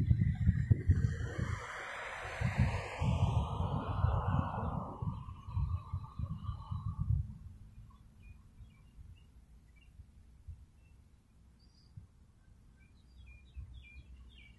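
Wind buffeting the microphone in heavy, irregular thumps, under a whooshing noise that falls in pitch and fades out about seven seconds in; then quiet outdoor air with faint, scattered bird chirps.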